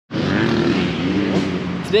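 Dirt bike engines running on the motocross tracks, a steady drone with a brief rise in revs a little past halfway.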